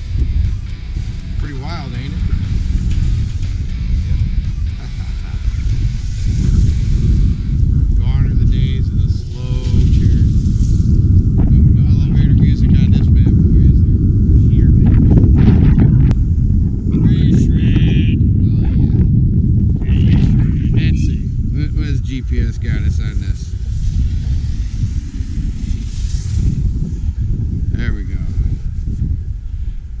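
Steady low rumble that swells louder in the middle, with voices and music heard intermittently over it.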